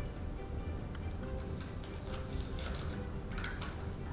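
Soft background music of steady held notes. Faint clicks and rustles come about two and a half to three and a half seconds in as a small plastic draw ball is twisted open and the paper slip is taken out.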